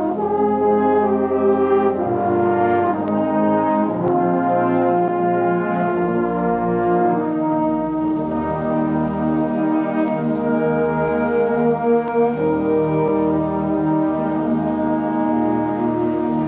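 Student concert band playing a slow passage of held chords, brass to the fore, the harmony shifting every couple of seconds.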